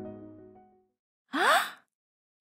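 Soft background music fades out, and after a short pause a woman gives one brief, breathy exclamation that rises in pitch.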